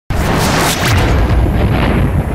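Logo-intro sound effect: a loud boom that starts suddenly, with a deep low end and a dense hiss across the whole range.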